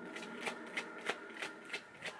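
A tarot deck being shuffled by hand, the cards sliding and tapping against each other in a quick, irregular run of soft clicks.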